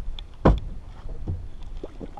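A dull thump on the boat about half a second in, followed by a few lighter knocks.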